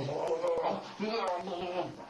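A man's voice making made-up creature talk instead of real words, with wavering pitch, in two phrases broken by a short pause about a second in.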